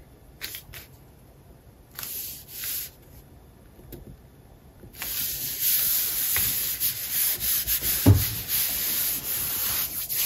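Hands rubbing a sheet of patterned scrapbook paper onto cardstock to smooth it down: a few short paper rustles at first, then steady, loud rubbing from about halfway through.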